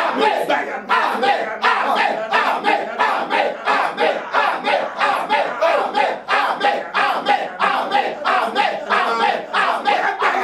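Loud, rapid shouted prayer from a man's voice, unbroken, with a crowd of voices praying aloud at the same time.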